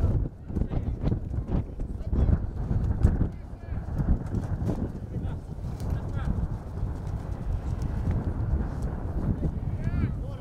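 Outdoor football match sound dominated by wind buffeting the camera microphone, with a few sharp knocks and faint, distant shouts from the pitch.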